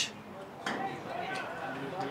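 Open-air football pitch ambience: faint, distant calls of players on the field over a low background hiss, with one short knock about a third of the way in.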